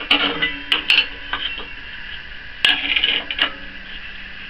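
Hard wooden strips clacking against each other and the saw table as they are laid down and shifted into place: several sharp clacks in small clusters, with the loudest group nearly three seconds in.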